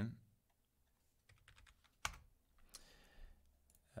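Faint computer keyboard keystrokes and clicks, a few scattered taps with the sharpest about two seconds in.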